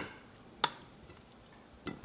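Two short clicks of a plastic spatula knocking against the air fryer's pan while food is scooped out onto a plate, one about half a second in and one near the end, with quiet between.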